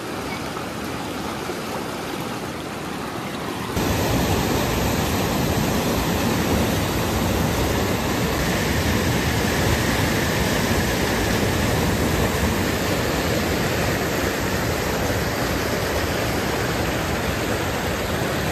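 Rocky river water flowing over stones, then, with a sudden step up about four seconds in, the louder, steady rush of a small waterfall cascading between boulders into white water.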